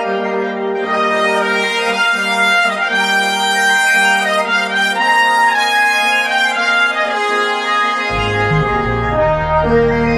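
A brass fanfare: trumpets and other brass play sustained chords over a held low note, and a deeper bass part comes in about eight seconds in.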